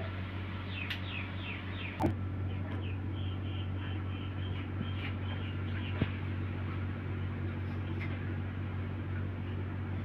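A steady low hum with a run of faint, quick high chirps like a small bird's in the first half, and a couple of soft clicks.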